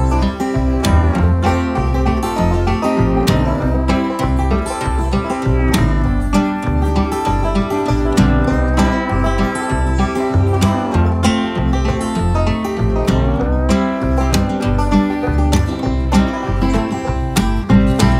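Instrumental break of an Americana/jug-band song: an electric lap steel guitar plays the lead in sliding notes over a strummed and picked banjo, acoustic guitar and plucked double bass.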